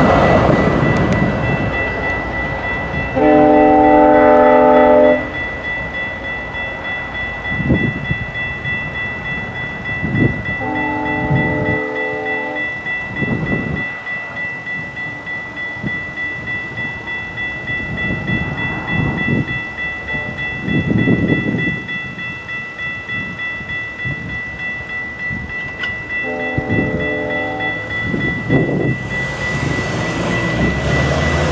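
Level-crossing warning bell ringing steadily while a GO Transit locomotive sounds its multi-note chime horn three times: two blasts of about two seconds, about 3 and 10 seconds in, and a shorter one near the end.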